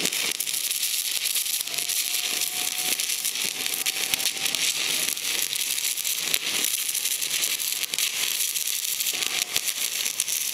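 DC stick welding arc on aluminum: the electrode burning with a steady crackling hiss and many small pops throughout.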